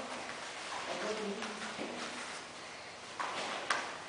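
Quiet stretch of faint background voices in a large room, then a couple of sharp smacks in the last second.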